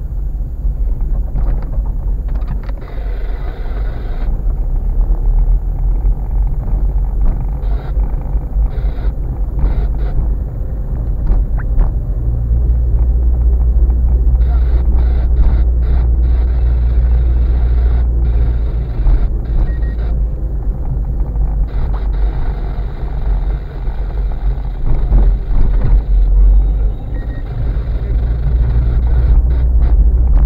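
Car driving slowly over a rough, broken lane, heard from inside the cabin: a steady low road and engine rumble with frequent short knocks and rattles as the wheels hit bumps and potholes.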